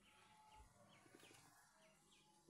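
Ducklings peeping faintly: about five short high peeps, each dropping in pitch.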